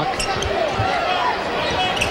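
A basketball dribbled on a hardwood court: a few dull bounces over a steady arena crowd murmur.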